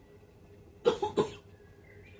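A woman coughing twice in quick succession about a second in.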